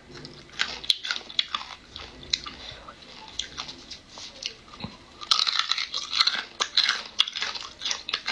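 Close-up eating sounds: a person chewing and crunching food, with sharp crackling clicks that grow dense and loud from about five seconds in.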